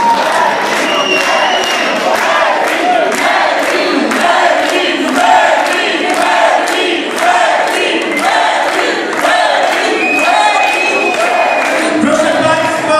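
A club crowd shouting and cheering together, with rhythmic clapping about twice a second.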